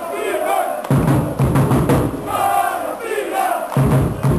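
Ice hockey supporters chanting loudly in unison, many voices on a sung melody, with regular beats underneath.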